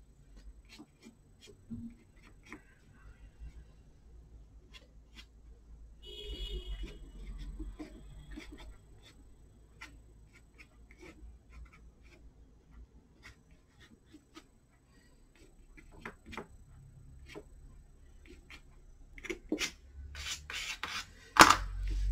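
Faint scratching strokes and light taps of a palette knife on watercolour paper, scraping into the wet paint. The scraping is strongest a few seconds in, and a few sharper clicks come near the end.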